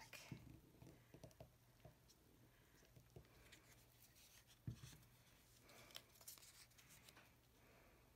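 Near silence with faint paper rustling and small taps as paper pieces are handled and pressed down on a craft table, and one soft thump about halfway through.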